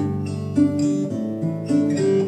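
Acoustic guitar played solo, plucking chords with a new note or chord about every half second.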